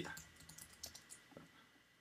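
Faint, irregular keystrokes on a computer keyboard as a short sentence is typed, mostly in the first second and a half.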